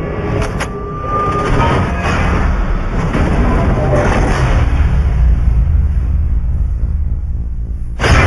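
Film-trailer music and sound design: a heavy, steady low rumble with several swelling swishes building over the first half, under the appearance of the title logo.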